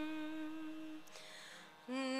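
A single voice chanting a Sanskrit prayer holds the last note of a line steady until it fades out about halfway through. After a short pause the next line begins just before the end.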